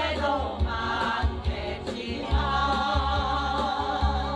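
A small mixed group of elderly women and men singing a Korean song together into microphones, over a backing track with a pulsing bass line. The line sung is "후회도 많겠지만" ("though there may be many regrets").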